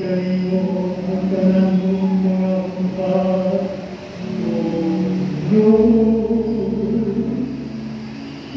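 Church choir singing a slow hymn in long held notes, with a low steady bass note coming in a little past the midpoint.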